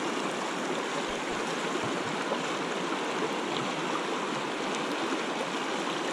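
Steady rush of a flowing stream, an even wash of water noise with no breaks.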